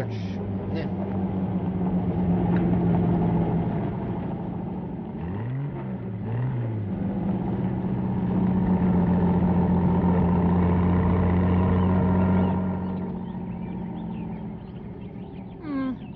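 Car engine running as the car drives up. The pitch rises and falls twice about six seconds in, the engine grows louder, then it drops off suddenly about twelve and a half seconds in as the car pulls up.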